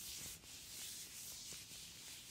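Latex-gloved hands rubbing together close to the microphone: a continuous soft, hissing friction of rubber on rubber, with a few small crinkles in it.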